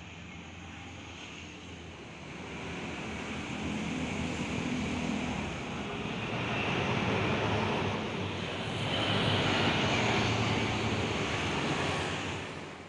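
Bus engine running close by, with no words over it, swelling louder about three seconds in and again twice near the end.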